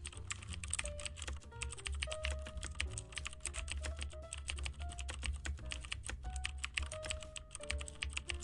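Computer keyboard typing, a fast run of many keystroke clicks a second, over soft background music with a steady low bass.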